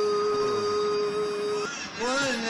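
A man singing, holding one long steady note that breaks off about three-quarters of the way through; a new sung phrase begins near the end.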